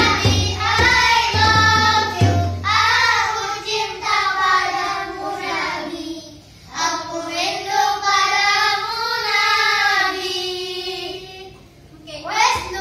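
Boys singing a shalawat together, with rebana frame drums and a hand drum beating for the first couple of seconds, then voices alone. The singing breaks off briefly about halfway through and trails off near the end.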